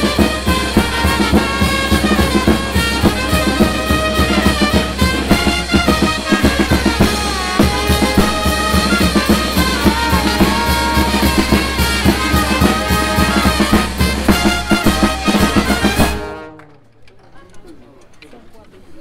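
Brass band playing, with trumpets, trombones and tuba over bass drum, snare drum and crashing hand cymbals in a steady beat. The music stops suddenly about two seconds before the end.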